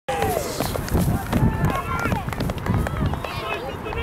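Several women footballers shouting and cheering at once, overlapping high-pitched calls that begin abruptly, the players celebrating a goal. A low rumble runs underneath.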